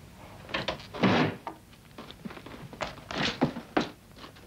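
A heavy book being handled: a loud thunk about a second in, then rustling and a few sharper knocks as it is moved and opened.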